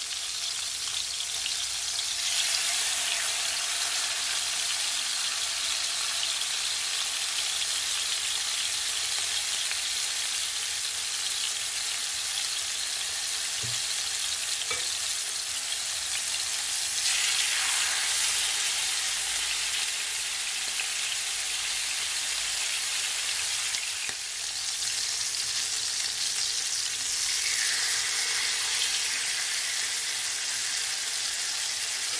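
Chicken thighs sizzling skin side down in hot olive oil in a frying pan, a steady hiss. It swells louder a few times as more thighs are laid into the oil.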